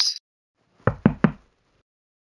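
Three quick knocks on a door, evenly spaced about a fifth of a second apart.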